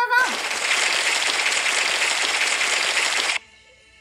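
A loud, steady rush of grainy noise that cuts off suddenly about three and a half seconds in.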